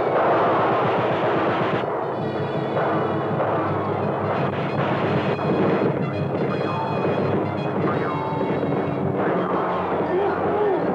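Orchestral cartoon score with a rapid rattle of machine-gun-fire sound effects, loudest at the start.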